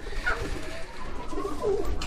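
Domestic pigeons cooing in a loft: soft, low, wavering coos.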